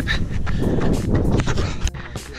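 A runner's footfalls on a dirt trail, a few steps a second, with wind buffeting the action camera's microphone.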